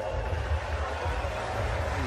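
Steady crowd murmur and ground ambience at a cricket match, with a low rumble underneath and no distinct single event.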